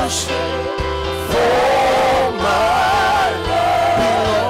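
Live gospel worship singing: a praise team of lead and backing singers on microphones, with a band's steady bass notes underneath.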